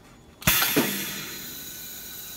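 Pneumatic bag-on-valve aerosol filling machine cycling: about half a second in a clunk and a sudden burst of compressed-air hiss, a second knock just after, then the hiss slowly dies away over a steady low hum.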